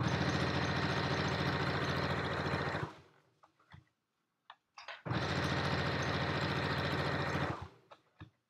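Brother domestic sewing machine stitching fabric in two steady runs of about three seconds each, with a short pause between them holding a few faint clicks and rustles as the fabric is handled.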